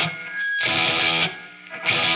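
Electric guitar through a RAT-clone distortion pedal and a Ceriatone tube amp into a T75-loaded Marshall 2x12 cab, close-miked with an SM57: a treble-heavy, raw and nasally distorted tone. Two short chord stabs are choked off in between, the first about half a second in and the second near the end.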